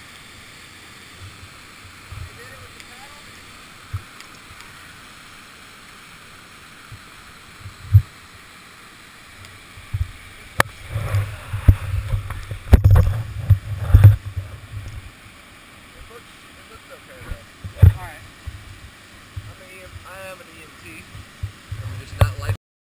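Steady rush of a whitewater waterfall close by. Between about 10 and 15 seconds in comes a cluster of thumps and knocks against the helmet camera, with single ones near 8 and 18 seconds.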